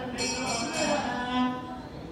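A man chanting into a microphone, holding one long note that bends in pitch partway through and eases off near the end.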